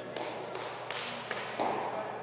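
Cricket ball knocking on artificial turf and off the bat in a defensive block: a few sharp knocks, the loudest near the end.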